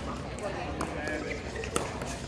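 A single sharp hit of a pickleball paddle striking the plastic ball near the end, part of a rally, over a steady murmur of background voices.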